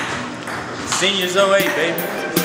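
Background music with a voice coming in over it about a second in.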